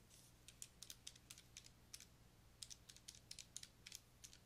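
Faint, irregular run of small clicks from calculator keys being pressed, a couple of dozen taps spread over the few seconds.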